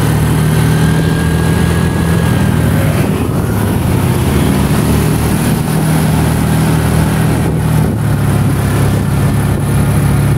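A motorcycle engine running at a steady low hum with road and wind noise, while riding along in traffic.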